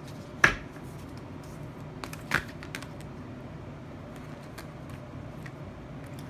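Tarot cards being handled: scattered light clicks and taps of the cards, with a sharper one a little over two seconds in, over a steady low hum.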